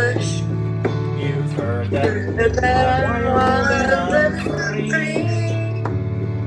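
Electronic keyboard music: held bass notes changing every second or two under a steady beat, with a wavering melody line above.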